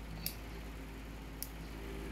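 Backing being peeled by hand off a small adhesive pad, with two faint sharp ticks about a second apart.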